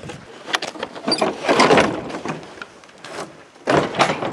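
Rustling, scattered clicks and knocks of a person moving about with a handheld camera, with a louder rushing noise about a second and a half in.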